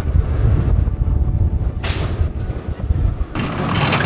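Zierer steel roller coaster train rumbling along its track as it passes close by, with a short sharp rush of noise about two seconds in. Near the end the low rumble gives way to brighter track noise.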